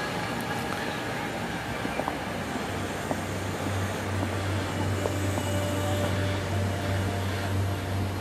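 Steady open-air background noise, with a low steady hum coming in about three seconds in and a few faint clicks.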